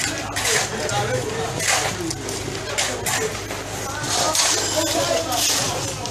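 Several people talking at once over short scraping noises, about one a second, from hand tools working through gravel and concrete mix.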